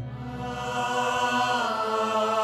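Background score of the serial: a chanted vocal over long held tones, swelling in volume over the first second.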